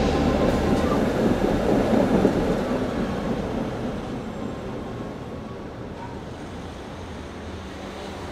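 A light-rail tram running past on street track, loud at first and fading away over a few seconds into quieter steady background noise.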